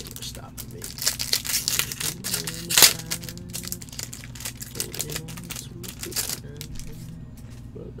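A trading-card pack wrapper is torn open and crinkled by gloved hands, giving a run of crackling crinkles in the first three seconds, loudest near three seconds in. Scattered lighter crinkles follow until a couple of seconds before the end.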